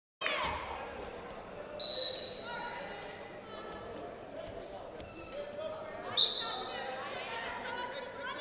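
A whistle blown twice in an indoor arena: a loud blast about two seconds in and a shorter one about six seconds in. The chatter of voices around the hall runs underneath.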